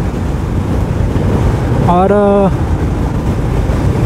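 Steady wind rush on the microphone over the running single-cylinder engine of a Royal Enfield Scram 411 at highway speed, around 100 km/h.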